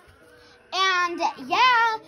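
A child's voice in a high, sing-song drawn-out "yeah": two short phrases with gliding pitch after a quiet first moment.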